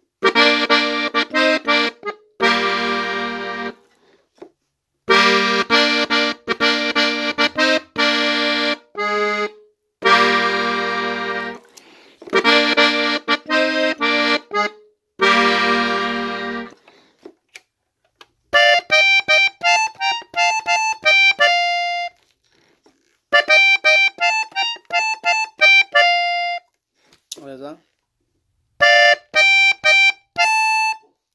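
Diatonic button accordion in F, on its master register, playing short phrases of a tune in B-flat that stop and start again. For about the first half the bass and chords sound under the melody; in the later phrases only the right-hand melody plays.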